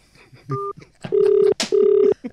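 Telephone ringback tone heard over the studio phone line as a call is placed: a short beep, then a double ring of two steady tones, each about half a second long.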